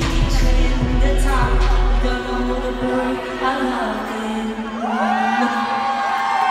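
A pop song performed by a woman singing over band and synth backing. The heavy bass drops out about two seconds in, leaving her voice over a held low note.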